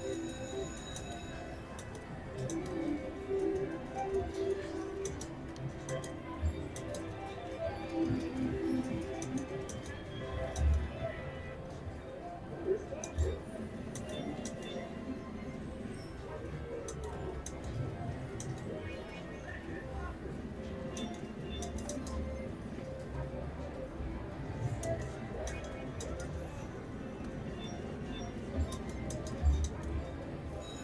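Casino floor ambience: steady background music and indistinct chatter, over which a mechanical three-reel slot machine's reels spin and stop, with a few short thumps now and then.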